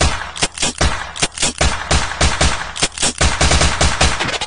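Rapid gunfire sound effects: machine-gun-like bursts of shots, several a second, with quicker runs.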